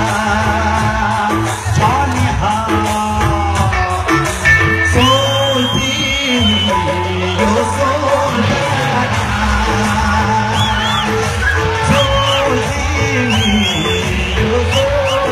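A Nepali song performed live on stage: a male singer's voice over a band, with yells and whoops among the singing.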